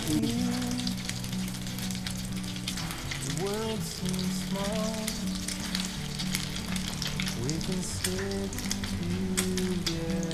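Beef luncheon meat slices sizzling and crackling in hot oil in a frying pan, steady throughout, with a spatula moving them in the pan. A song with a melody plays faintly underneath.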